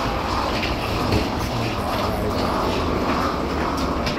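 Wheeled suitcases rolling and feet walking on the ribbed floor of an airport jet bridge, a steady rumble with light ticking, over a murmur of passengers.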